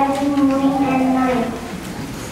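A young girl's voice through a microphone, drawing out one long, nearly level syllable for about a second and a half before it trails off.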